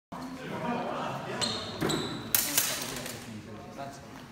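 Steel training swords clashing twice in quick succession, each with a brief metallic ring, then a louder sharp impact about two and a half seconds in, echoing in a large hall.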